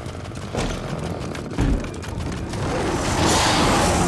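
Heavy iron-studded wooden door's latch and bolts being worked open: a run of metallic clicks and clanks, with a heavy thump about a second and a half in. A swell of noise builds near the end.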